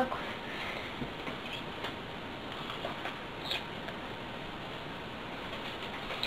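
Faint handling sounds of hands working nylon beading line and a beaded bracelet: a few light ticks and scratches over a steady hiss.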